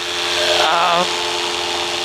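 Paramotor engine running steadily in flight, an even droning hum that holds throughout.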